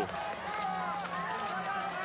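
Faint voices in the background over a steady low hum, quieter than the commentary around it.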